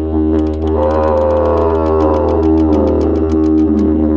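Didgeridoo playing a steady low drone, its overtones sweeping up and then back down as the player shapes the sound, with a fast, even ticking rhythm above it.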